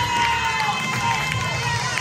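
Gospel song playing in a church hall: a woman's voice holds long sung notes that rise and fall, over a steady low accompaniment.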